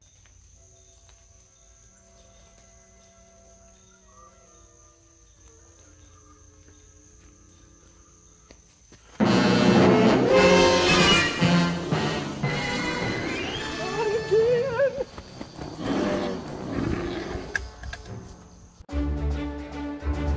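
Faint music with slow, held notes, then about nine seconds in a sudden, much louder stretch of wild, roaring cries with rising and falling pitch that lasts about ten seconds. A different music starts near the end.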